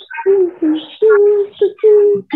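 A woman speaking, with several drawn-out syllables held at a steady pitch.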